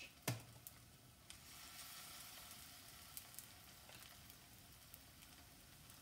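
Banana fritter batter frying in hot oil in a frying pan, a faint steady sizzle that grows stronger about a second in as a fresh spoonful of batter goes into the oil. A single sharp tap comes just before.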